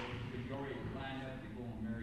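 Faint, indistinct speech: a voice murmuring in the background, with no ball impacts.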